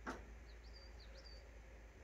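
A small bird chirping faintly: a quick run of five or six short, high chirps between about half a second and a second in, against an otherwise near-silent background.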